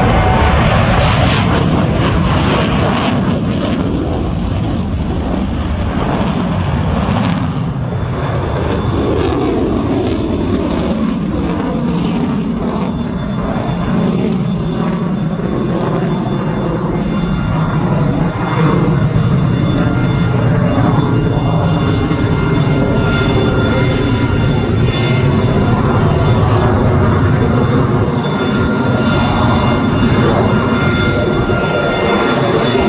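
F-22 Raptor's twin jet engines running loud and steady as the fighter lifts off and climbs away, the jet rumble holding throughout with tones that slide slowly in pitch as it moves.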